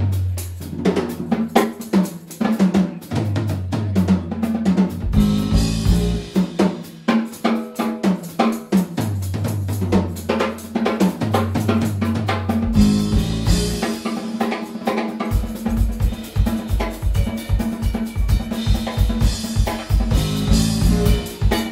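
Jazz-rock band playing live, with the drum kit loudest over sustained bass notes. About fifteen seconds in, the drumming turns into fast, evenly spaced strokes.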